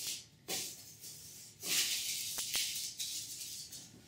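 Plastic cling film crinkling and rustling as it is wrapped around a ball of biscuit dough: a short burst, then a longer crinkling stretch in the middle with a couple of sharp clicks.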